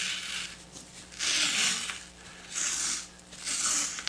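Blue painter's tape being pulled off the roll in about four short, noisy pulls as it is wrapped around a bowl on the lathe.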